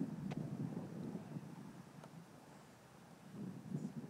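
Faint outdoor ambience: a low wind rumble on the microphone, a little stronger in the first second or so and then dying away.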